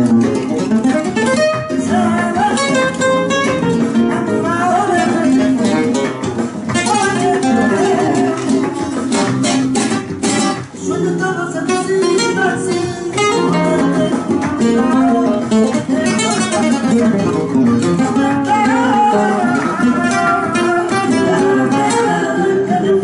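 Solo flamenco guitar playing a run of picked melodic lines and chords. About halfway through comes a cluster of sharp, percussive strums.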